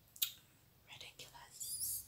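A woman's quiet mouth sounds: a short lip smack about a quarter second in, then soft breathy sounds near the end just before she laughs.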